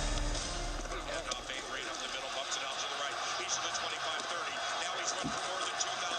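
The soundtrack music fades out at the start. Then come indistinct voices and field sound from the players on the football field, with no clear words.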